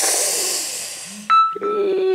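A woman's long, breathy sigh that fades out over about a second, followed near the end by a short hum of voice as she starts speaking again.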